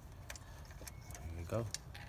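Faint, irregular metallic clicks and clinks of hand tools being worked in a spark plug well, about five sharp ticks over two seconds.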